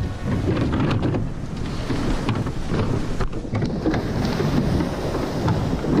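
Wind noise on the microphone over surf and water splashing around a surf boat as its crew climbs in and starts rowing. Scattered sharp knocks run through it.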